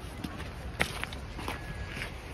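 A few irregular footsteps on loose stones, over a steady low background rumble.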